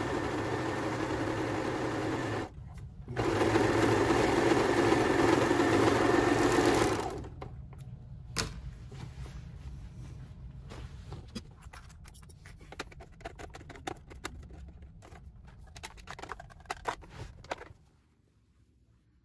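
Overlock serger running at speed, stitching and trimming the edge of the fabric with its cutter. It pauses briefly about two and a half seconds in and stops at about seven seconds. After that come quieter rustles and small clicks as the fabric is pulled off the machine and handled.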